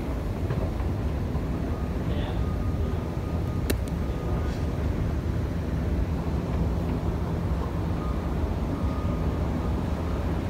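Escalator running while being ridden upward: a steady low rumble and hum from its drive and moving steps, with one sharp click about a third of the way through.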